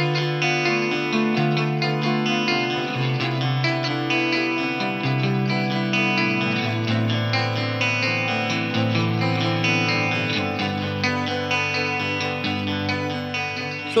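Electric guitar music played through effects pedals, chords over a bass line that changes note every second or two, the sound dull in the top end.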